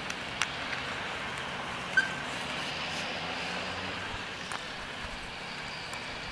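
A few sharp clicks from a backpack strap and its plastic buckle being handled, the loudest about two seconds in, over a steady background of distant traffic.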